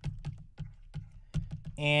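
Light, irregular clicks and taps from a stylus on a pen tablet as words are handwritten, several a second.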